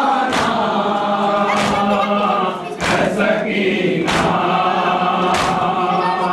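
A group of men chanting a noha together, with a sharp slap about every second and a quarter in time with the chant, typical of matam (rhythmic chest-beating).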